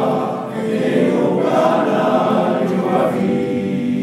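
Men's choir singing together, sustained voices in close harmony.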